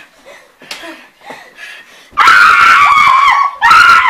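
A child screaming loud and high for about a second and a half, then again briefly near the end, during play wrestling. Short snickering laughs come before it.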